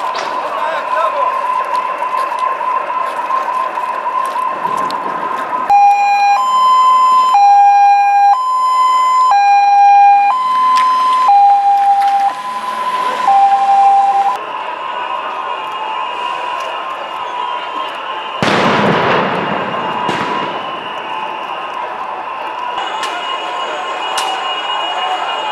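Ambulance siren passing close: a steady high siren tone, then from about six seconds in a loud two-tone hi-lo siren switching between two pitches about once a second for some eight seconds, before the steady tone returns. A brief loud rush of noise comes about three-quarters of the way through.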